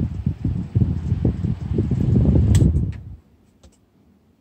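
Small 6-inch desk fan running, its air stream buffeting the microphone in an uneven low rumble. There is a sharp click about two and a half seconds in, and the rumble stops abruptly just after three seconds, followed by a couple of faint ticks.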